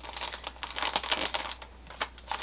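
Packing paper crinkling and rustling as a folded T-shirt is wrapped in it: a run of quick crackles that dies down near the end.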